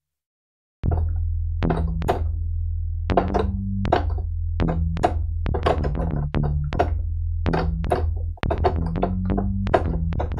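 Korg opsix FM synthesizer playing its '90's House Bass' preset: a deep bass line of short repeated notes, each with a sharp, clicky attack, starting just under a second in after a brief silence.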